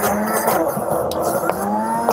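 Electric countertop blender running steadily at speed, chopping vegetables in its jar: a loud motor whine under the chopping noise.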